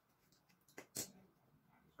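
Near silence, with two faint sharp clicks about a second in as a metal binder clip is taken off a clamped paper pad and set down.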